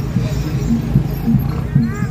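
Javanese gamelan music accompanying a barongan procession, with drum strokes in a steady rhythm several times a second. A short wavering call comes in near the end.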